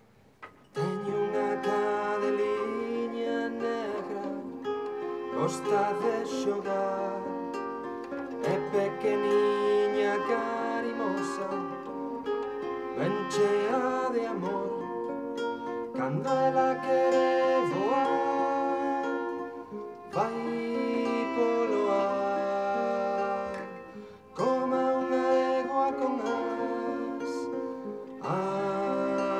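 Live acoustic folk music starting about a second in: nylon-string classical guitar with a bowed nyckelharpa and a man singing.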